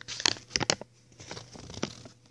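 A folded paper slip being unfolded and handled close to the microphone: a few sharp crinkles and rustles.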